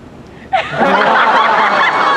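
Audience laughing, breaking out suddenly about half a second in and going on loudly.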